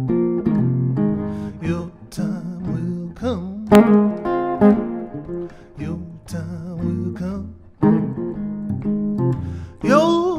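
A man singing a slow song, accompanying himself on a Gibson archtop guitar with plucked chords; his voice holds some long notes with vibrato.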